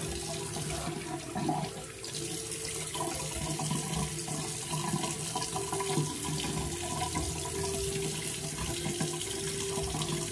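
Bathroom sink tap running steadily into the basin.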